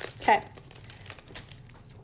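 Light crinkling and rustling of packaging being handled, a few small crinkles scattered through a quiet stretch.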